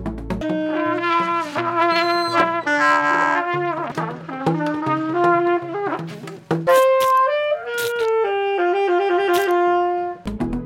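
A trumpet playing a melody of held notes with some slides in pitch, a short break just past halfway, then a second, higher phrase.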